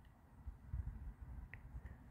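Near quiet: a faint low rumble with one small click about one and a half seconds in.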